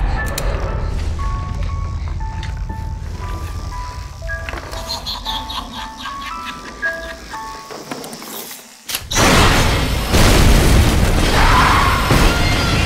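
Trailer music: a slow melody of single high notes, like a music box, over a low drone. About nine seconds in the sound drops almost to silence, then a sudden loud boom breaks in and a dense wash of noise follows.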